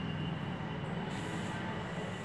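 Steady low rumbling background noise with a thin, steady high whine above it, and a brief hiss a little after a second in.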